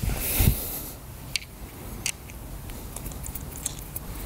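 Handling noise as the putter is lifted, then a run of light clicks and ticks as a counterweight is fitted into the butt end of the putter grip.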